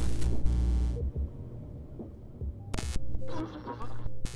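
Electronic outro sound design: a low throbbing hum under bursts of glitchy static, one lasting about a second at the start and a shorter one nearly three seconds in.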